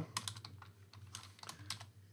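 Faint clicks of a computer keyboard: an irregular run of keystrokes as a line of code is typed.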